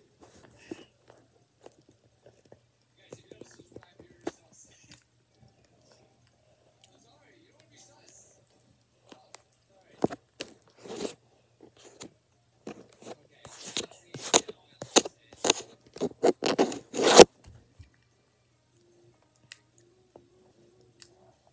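Eating sounds close to the microphone: a few faint mouth clicks at first, then about ten seconds in a run of loud crunching and chewing noises that stops a couple of seconds before the end.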